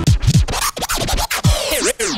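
DJ record-scratching in a dance track: a quick run of back-and-forth scratches, each a sharp sweep of pitch up and down, starting abruptly as the previous music stops.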